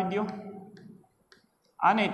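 A few faint, sharp clicks of chalk on a blackboard as a number is written, after a man's voice trails off in the first second.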